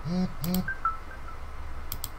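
Two short murmured voice sounds from a man, then a single sharp click of a computer key or mouse button near the end.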